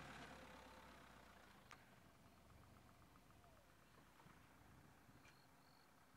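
Near silence: a faint vehicle engine hum fades away over the first couple of seconds, leaving quiet outdoor ambience with a faint tick and a short faint high whistle.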